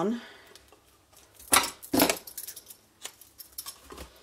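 Small scissors snipping ribbon, two sharp cuts about half a second apart, followed by lighter clicks and rattles as the blades and the ribbon are handled.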